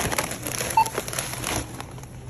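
Crinkling plastic of a bag of tortilla chips being handled and scanned at a self-checkout, with one short beep from the scanner a little under a second in as the item registers.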